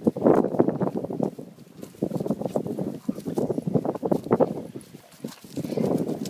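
Two Doberman Pinschers growling in play as they both hold and tug at one ball, in rough bursts that come and go every second or two.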